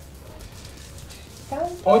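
Faint rustling and clicking of plastic dice being rummaged in a cloth bag, over a low steady hum; a voice starts speaking near the end.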